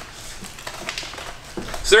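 Faint crinkling and rustling of a kraft-paper coffee bag being handled as a hand reaches inside, with a few light clicks.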